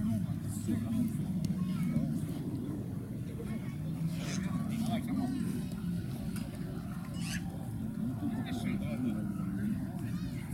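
Indistinct calls and shouts of players on the pitch over a steady low rumble, with a few short sharp sounds in between.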